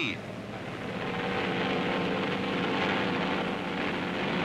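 F4U Corsair fighter's radial piston engine running up to full power for a deck takeoff: a steady engine drone that swells over the first second and then holds.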